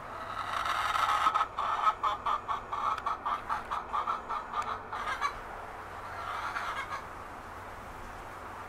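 A chicken clucking: a rapid run of short calls, about four a second, that stops about five seconds in, followed by a softer call near the end.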